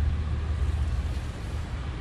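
HVAC unit running in cooling mode, a steady low hum with an even rush of air over it; it keeps running because the thermostat is still calling for cooling.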